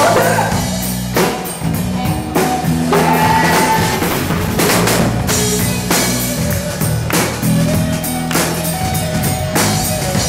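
Live pop-rock band playing: a drum kit keeping a steady beat under electric and acoustic guitars, with a male lead vocal singing over it.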